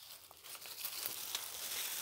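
Rustling and crackling of dry leaf litter and undergrowth underfoot as someone walks through forest, growing louder in the first second.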